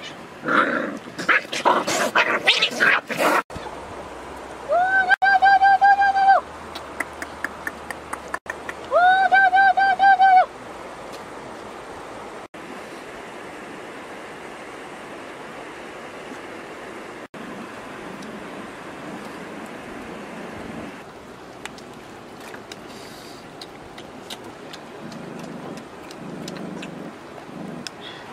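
Dogs and puppies feeding. A burst of short animal cries comes in the first few seconds, then two long, wavering, high-pitched cries about four seconds apart. After that there is only a low steady background with faint ticks.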